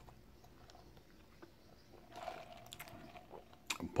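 Faint sucking of iced coffee through a plastic straw, a soft slurp starting about two seconds in and lasting about a second, followed by a few small mouth clicks near the end.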